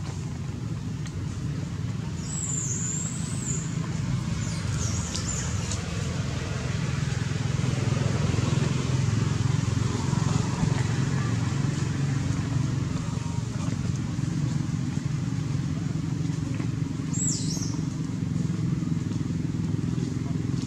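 A steady low motor drone runs throughout. Brief high squeaks come about two to three seconds in and again near the end.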